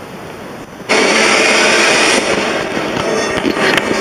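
Television soundtrack playing in the room: a steady hiss, then about a second in a sudden loud rush of noise that carries on, with sharp crackles near the end.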